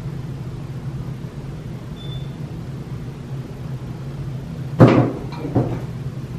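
Two knocks of containers being set down on a table: a sharp loud one nearly five seconds in, then a lighter one half a second later, over a steady low hum.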